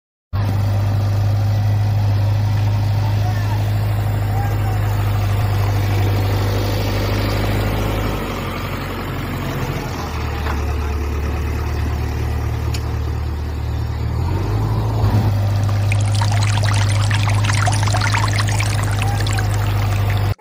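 A loud, steady, low motor-like drone that drops in pitch twice and comes back up. A noisy, rushing hiss joins in over the last few seconds.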